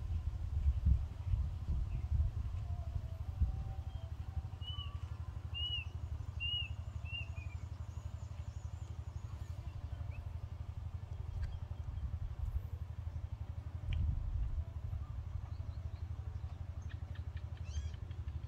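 Wind rumbling on the microphone as a steady, fluctuating low roar, with a small bird chirping four times in quick succession about five to seven seconds in.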